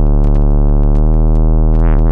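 Software modular synthesizer (a VCV Rack oscillator waveshaped by a ZZC FN-3) holding a loud, low, buzzy drone rich in overtones, with sparse static crackle over it. Near the end the upper overtones briefly swell and sweep before settling back.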